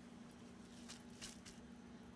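Near silence: room tone with a faint steady hum and a couple of soft, brief rustles.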